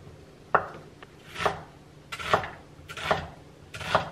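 Chinese cleaver cutting tofu and red onion on a wooden cutting board: five knife strokes, roughly one a second, each ending in a knock of the blade on the board.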